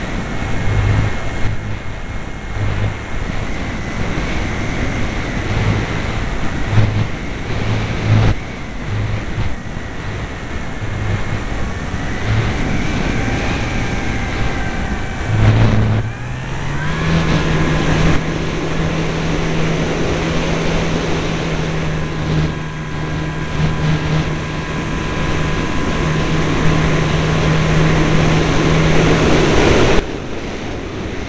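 Airflow rushing over a wing-mounted camera's microphone, with the steady whine of the Parkzone Radian glider's electric motor and propeller. About halfway through the whine changes abruptly to a higher, stronger tone, a throttle change, and holds steady.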